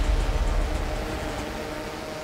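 Many dirt bike engines running together at a race start line, heard as a steady low rumble that slowly fades.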